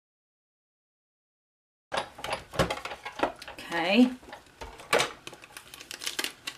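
Dead silence for about the first two seconds, then cardstock being handled and a die-cut oval worked free of the panel: paper rustling and scraping with many sharp clicks, and a brief murmured voice.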